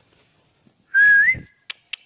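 A short, loud whistle about a second in: one clear note that rises in pitch at its end. Near the end, sharp clicks begin, about four a second.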